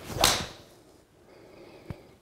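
A 7 iron swung through and striking a golf ball off a hitting mat: one quick swish that peaks with the strike about a quarter of a second in. A short sharp click follows near the end.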